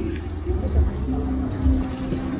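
Restaurant background sound: a steady low rumble with indistinct voices, and a single held humming tone through the second half.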